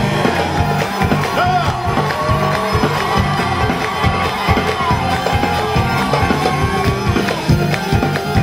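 Kabyle band playing live, a mandole and drum kit, with the crowd cheering over the music.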